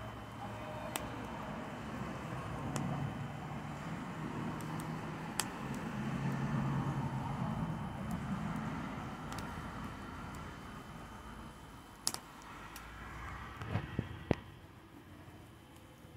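Bonfire crackling, with about half a dozen sharp pops, most of them bunched near the end, over a steady low rumble that swells through the first half and then fades.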